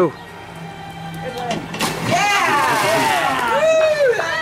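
A person jumping off a diving board into a swimming pool: a single sudden splash about two seconds in, followed by excited shouting from people around the pool.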